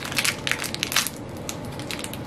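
A small plastic mystery-pack wrapper crinkling and crackling as it is pulled open by hand, dense at first and thinning out after about a second.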